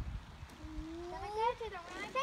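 A child's voice: one long wordless call that rises in pitch over about a second, then wavers and drops away.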